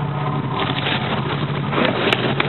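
Sportfishing boat's engine running steadily, with water and wind noise around it. Near the end there is a splash as the bluefin tuna is dropped over the side.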